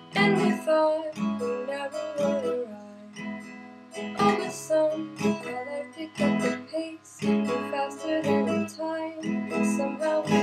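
Acoustic guitar strummed in a steady rhythm, with a voice singing softly over it at times.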